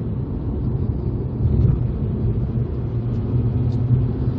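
Mazda RX-8 R3's twin-rotor Wankel rotary engine running as the car drives along, a steady low drone mixed with road rumble, heard from inside the cabin.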